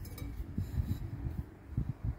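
Low, irregular handling noise and faint rubbing as a porcelain beer stein is picked up and raised in the hand.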